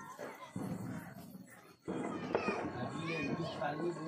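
Children's voices, talking and playing. About two seconds in, an abrupt cut brings in louder, different voices.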